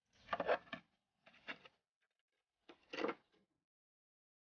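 A steel shovel working loose soil and small stones into a footing pit, in three short scraping strokes about a second apart.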